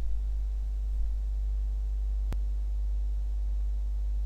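Steady low electrical hum, with a single sharp click a little past halfway.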